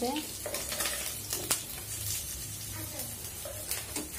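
Small whole fish frying in hot oil in a nonstick pan, sizzling steadily, with repeated clicks and scrapes of a metal spatula turning and lifting them.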